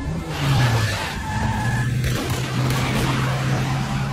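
Classic Fiat 500 driving off with its tyres skidding, its engine running at a steady low note that dips slightly in pitch in the first second.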